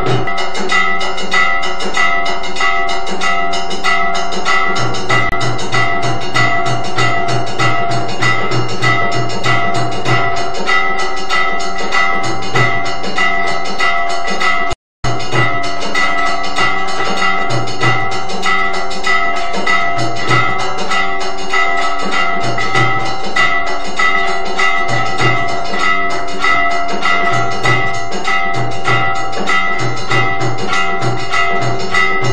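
Temple aarti percussion: bells and metal gongs struck rapidly and without pause, ringing on together, with a deep drum beating in runs of strokes. The sound cuts out for a split second about halfway through.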